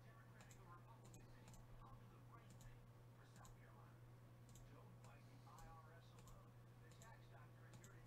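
Faint computer mouse clicks, scattered and irregular, over a low steady hum.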